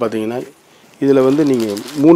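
Speech only: a man's low voice in two drawn-out phrases, a short one at the start and a longer one from about a second in.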